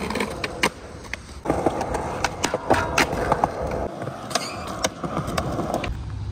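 Skateboard wheels rolling on concrete with sharp clacks of the board, and the deck sliding along a metal rail in a boardslide. The rolling and scraping run steadily from about a second and a half in, broken by several knocks.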